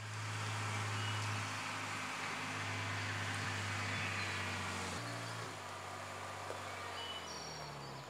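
A vintage saloon car's engine running at low speed, a steady low hum over a high, even hiss of plantation ambience. The engine note changes about five seconds in and fades away near the end as the car comes to a stop.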